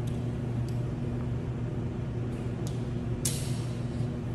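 A steady low machine hum runs throughout. Over it come a few light metal clicks and a short clatter of metal about three seconds in, as a carabiner and rescue pulley are hung on an overhead anchor.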